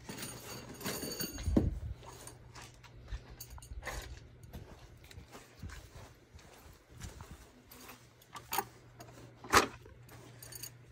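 Handling noises from tools and long metal masonry anchors: a metallic clink at the start as they are picked up, a dull thump about a second and a half in, then scattered taps and footsteps, with two sharp clicks near the end.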